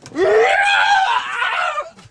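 One loud, drawn-out human scream lasting nearly two seconds, rising in pitch at the start and breaking off near the end.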